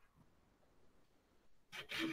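Near silence: room tone, with a woman's voice starting just before the end.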